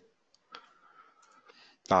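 A single faint computer mouse click about half a second in, selecting an object in the CAD program, followed by faint low rustle until a man's voice starts near the end.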